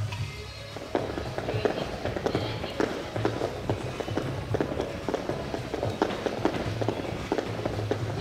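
Jump ropes slapping the floor mat and feet landing as several children skip, a quick, irregular patter of sharp slaps starting about a second in, over background music.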